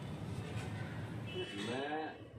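A cow mooing once near the end, a single pitched call that rises and bends, over a steady low rumble.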